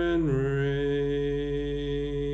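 Singing voice holding a long final note: the pitch slides down about a quarter second in, then holds steady.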